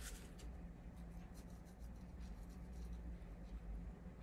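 Faint, scattered little ticks and crackles of coarse-grain Dead Sea salt being pinched and sprinkled by gloved fingers onto freshly poured cold-process soap. A steady low hum runs underneath.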